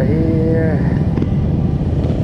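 Steady low rumble of wind buffeting a handlebar-mounted action camera's microphone on a moving bicycle, with a short spoken sound in the first second.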